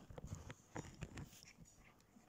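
Faint, scattered soft scratches and rustles of a cat biting and pawing at the edge of a woven rug, thicker in the first second and thinning out after.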